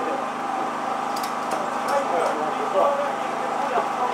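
Laughter and chatter over a steady engine drone, typical of a race car engine idling.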